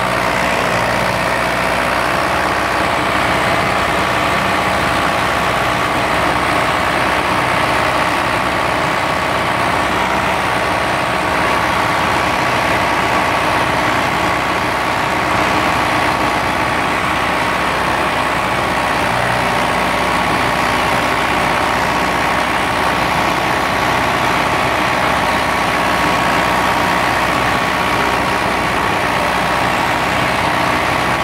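David Brown 996 tractor's diesel engine running steadily on a fresh set of piston rings, after a successful cold start. Its pitch lifts slightly in the first couple of seconds, then holds even.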